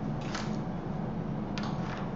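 Two brief swishes of hands sliding over a fondant strand on a stone countertop, one shortly after the start and one near the end, over a steady low hum.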